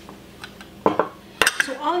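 Kitchenware being handled: a small glass dish set down and a metal fork picked up, giving a few short clinks and knocks about a second in and a sharper click shortly after.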